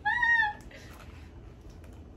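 A single high-pitched squeal, about half a second long, rising and then falling in pitch, followed by a few faint clicks.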